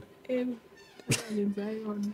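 A person's voice: a short vocal sound, a click, then one long drawn-out vocal sound, heard as laughter breaks out.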